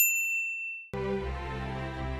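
A single high, bell-like ding that strikes suddenly and rings out, fading over about a second. Then music with sustained notes comes in.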